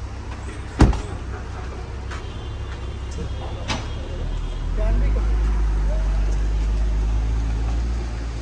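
A Range Rover's door slams shut about a second in, over the steady low rumble of the car's running engine. The engine grows louder about halfway through and stays up.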